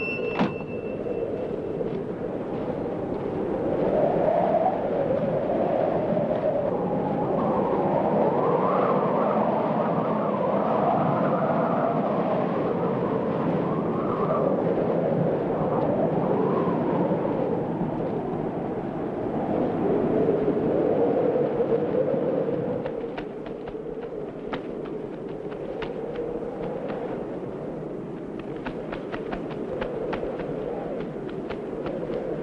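Snowstorm wind blowing in gusts, with a wavering, rising-and-falling howl. It eases off about two-thirds of the way through, after which faint crunching clicks are heard.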